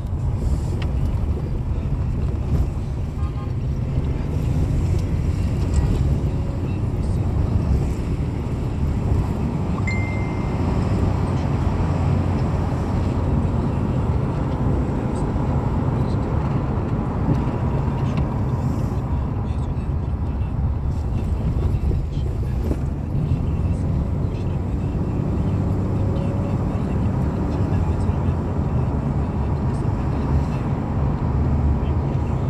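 Steady road and engine rumble of a moving car, heard from inside the cabin. A short high beep sounds about ten seconds in.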